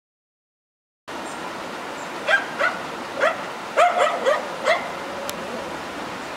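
A dog, trapped down in a ravine, barking in a string of about seven short barks, starting about a second in.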